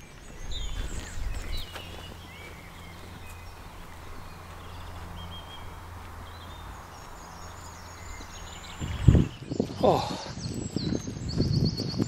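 Faint wild birds calling now and then over a low wind rumble on the microphone. About nine seconds in there is a loud bump on the microphone, and near the end a bird sings clearly in quick repeated notes.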